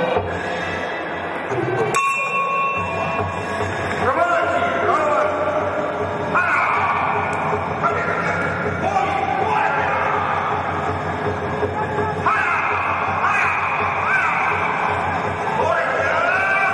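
Traditional Burmese lethwei ring music: a hne (Burmese oboe) playing a wavering melody full of pitch slides, over drums. A short bell-like ring sounds about two seconds in.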